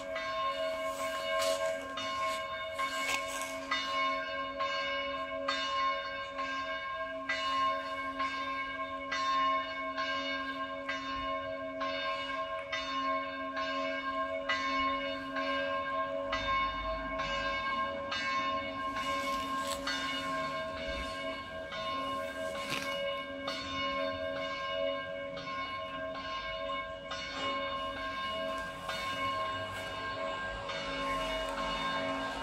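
Church bells ringing: a steady run of repeated strokes, the bell tones hanging on and overlapping between strikes.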